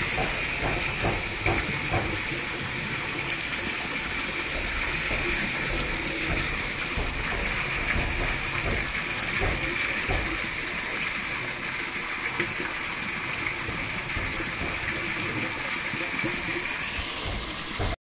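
Climbing perch (koi) fingerlings splashing and flapping in a shallow metal basin of water as a hand stirs and scoops them, with a few sharp wet splashes in the first couple of seconds over a steady water-like hiss.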